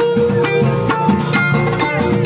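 Live Moroccan beldi band music: a plucked string instrument playing a melody over a steady beat.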